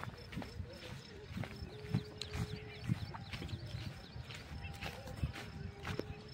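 Footsteps of a person walking on dry field ground, irregular thuds about two a second.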